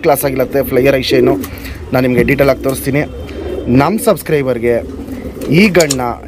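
Roller pigeon cooing at close range, a run of low coos that rise and fall in pitch, with a clear coo about four seconds in and another near the end.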